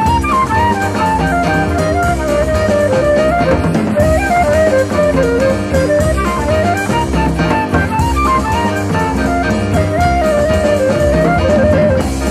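Jazz band playing: a single lead melody line winding up and down over drums and a low bass line.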